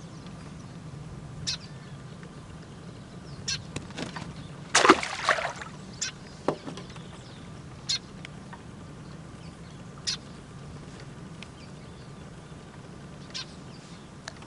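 Fish and fishing tackle being handled by hand: scattered light clicks and knocks, with a louder, longer noisy burst about five seconds in, over a steady low hum.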